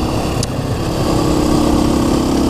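KTM 530 EXC-R single-cylinder four-stroke engine running at a steady cruise while riding, with wind noise on the microphone.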